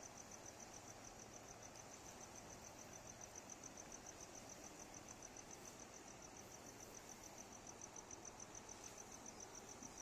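Faint cricket chirping: a quick, even run of high chirps that keeps on without a break, over a soft low hiss.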